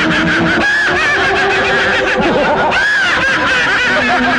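Many voices cackling with laughter at once, overlapping one another, over a steady low tone.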